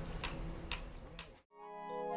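Sharp ticks about twice a second over a steady low hum. They cut off about one and a half seconds in, and background music with chiming mallet-percussion notes fades in.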